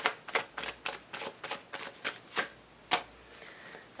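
A tarot deck being shuffled by hand: a quick run of light card flicks for about two and a half seconds, then one sharper card snap near three seconds in.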